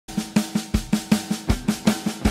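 Drum-kit intro to a song: a steady snare beat of about five hits a second, with a deeper bass-drum hit on about every fourth stroke.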